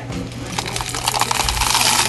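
Dense clatter of many small hard pieces growing louder, over a steady low hum: gravel being scooped and poured into a cup.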